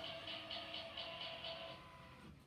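Halloween song played through the small speaker of a Gemmy animated dancing skeleton, with a steady beat of about four pulses a second; the song ends near the end.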